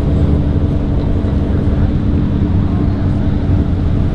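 A car engine idling steadily nearby, a low, even hum with a rumble beneath it and no revving.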